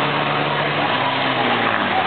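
Engines of the race cars and the short school bus running around the oval, heard from the grandstand over a constant noisy background. The engine drone holds steady, with its pitch sagging slightly about halfway through.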